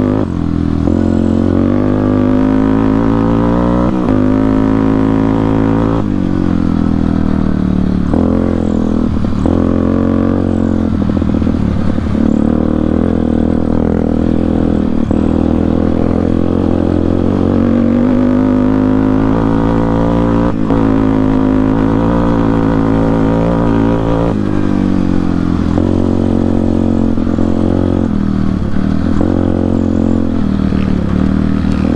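Yamaha Warrior 350 quad's single-cylinder four-stroke engine, with an aftermarket Rossier exhaust, running under load on the trail. Its pitch climbs as it accelerates and drops back every few seconds as the rider shifts or lets off the throttle.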